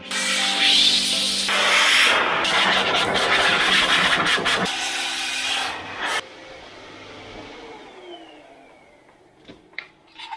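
Bruhl MD2800 Pro car-drying blower blowing air through its hose and nozzle into the car's crevices to drive water out: a loud rushing with a steady hum. About six seconds in it drops away sharply, leaving a fainter sound that fades with a falling pitch.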